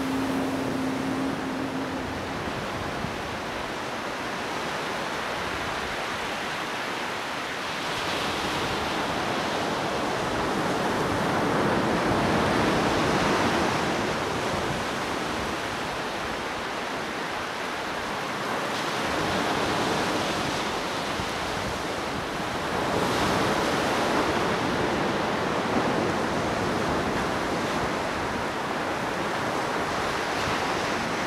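Sea waves breaking offshore and washing up a flat sandy beach, the surge swelling and easing every few seconds.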